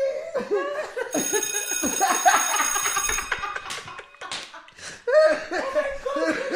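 Two men laughing hard in bursts, with a high, steady ringing tone sounding for about two seconds from about a second in.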